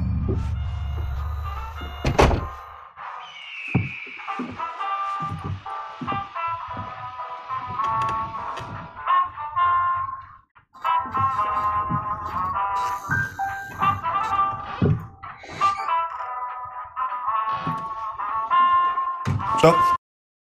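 Soundtrack of a web series episode playing: low intro music fades out, a sharp thunk about two seconds in, then a melodic tune with scattered knocks and clatter.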